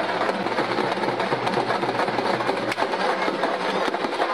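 Loud, dense open-air festival din with a steady low hum underneath, and one sharp crack about two-thirds of the way through.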